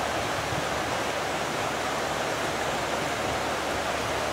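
River rapids rushing steadily: an even, continuous wash of white water.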